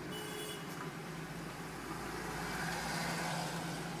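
Steady low hum of a 2009 Ford Focus's 1.8-litre four-cylinder engine idling.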